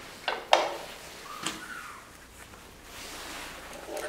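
A few light clicks and knocks, with a faint rustle, from a person handling small gear by hand; the sharpest click comes about half a second in. The nibbler is not running.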